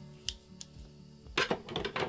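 Scissors snipping into a cotton fabric seam allowance to ease a curved seam: a few sharp clicks, with a quicker cluster of snips near the end, over soft background music.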